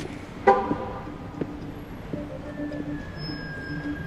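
A single short car horn toot about half a second in, the loudest sound here, over footsteps on a hard floor at a slow walking pace and a low steady music drone.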